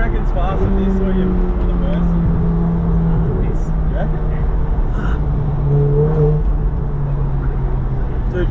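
Ferrari 488 Pista's twin-turbo V8 running at steady moderate revs, heard from inside the cabin, its pitch shifting down and up in steps a few times.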